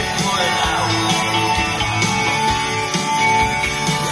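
Live rock band playing: electric guitar and keyboards over a steady drumbeat, heard from the audience in a theatre hall.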